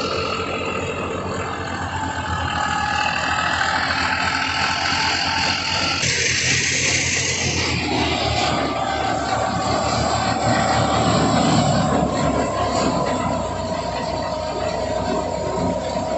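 Tractor's diesel engine running steadily under load, driving a wheat thresher by belt, with the thresher's drum and fan whirring. A steady whine joins about eight seconds in.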